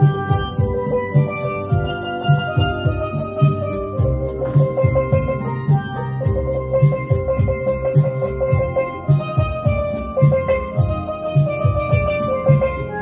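Steel pan playing a melody of ringing struck notes, with maracas shaking in an even rhythm and a steady low beat underneath.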